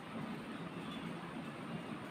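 Faint, steady background noise with no distinct event.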